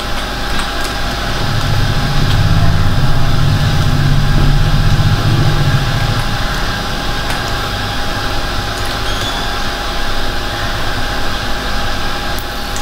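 Steady background hiss and hum, with a low motor-like drone that swells about a second and a half in and fades out by about six seconds.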